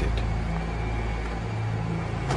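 A low, steady rumble with a held low hum underneath, with no sudden events.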